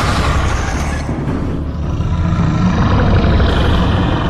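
Loud, deep, steady rumbling sound effect for a giant fire serpent (naga) rearing over the clearing.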